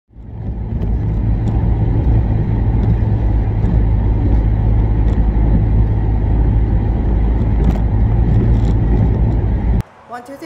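Steady low rumble of a moving car heard from inside the cabin, engine and tyre noise together. It fades in at the start and cuts off abruptly just before the end.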